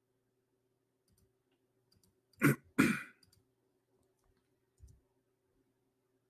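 A man coughs twice in quick succession, clearing his throat, followed by a faint low bump near the end, over a faint steady electrical hum.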